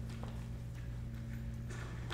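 A steady low electrical hum with a few faint knocks over it.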